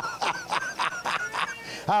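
Laughter in short, high-pitched bursts, about five in two seconds.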